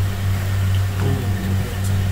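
Oil sizzling in a kadai as pakoda batter fries, over a loud steady low hum.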